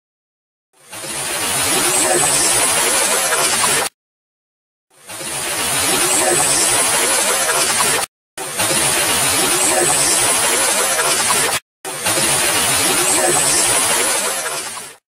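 A short camera-mic field recording that is almost all loud, hissing background noise, played four times in a row with brief silences between. In this stretch the uploader believes a faint whispered voice says 'listen', an EVP he takes for a spirit voice.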